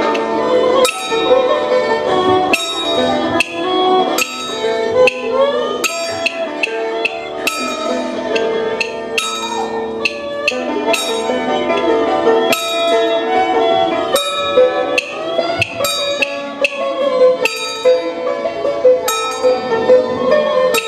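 Taoist ritual music: sharp percussion strikes with a metallic ring, about once or twice a second, over a sustained, wavering melody line.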